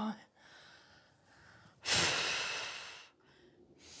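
A person's long, heavy sigh about two seconds in, starting sharply and fading away over about a second, with fainter breaths before it and the start of another sigh right at the end.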